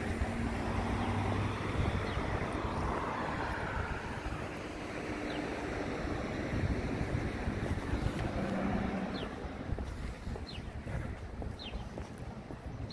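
Street traffic: cars driving past on a town main street, a low engine and tyre noise rising and fading, with wind buffeting the microphone.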